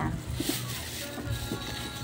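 Faint background voices with soft music, after the nearby speaker falls silent.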